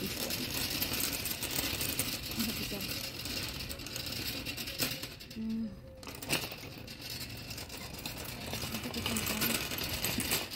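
Metal shopping cart being pushed across a concrete floor, its wheels and frame giving a steady rapid rattle.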